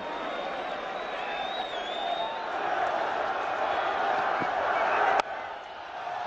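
Stadium crowd at a cricket ground, a steady din of many voices that swells and then cuts off suddenly a little after five seconds. A faint wavering whistle comes from the crowd about a second and a half in.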